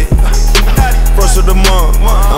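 Hip hop beat: a deep, sustained bass under a few sharp drum hits, with short snippets of voice bending in pitch over it.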